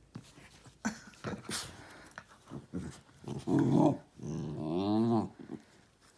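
Small dogs play-fighting: faint scuffling and rustling, then growls from about three seconds in, the last one long, rising and falling in pitch.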